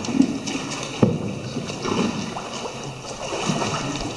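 Water sloshing around a paddled tour boat, with irregular swells of paddle strokes and a single knock about a second in.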